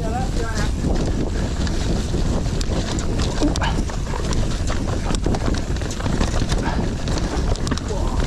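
Mountain bike descending a dirt trail: tyres on loose dirt and the bike rattling, with frequent knocks over bumps and roots. A steady low rumble of wind on the body-mounted camera's microphone runs under it.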